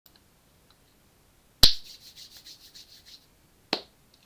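Handling noise close to the microphone: a sharp click, then a rapid run of scratchy rubbing strokes for about a second and a half, then a second click near the end.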